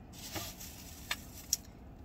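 Soft handling noises: a brief rustle early on, then two sharp clicks about a second apart, as food containers are handled.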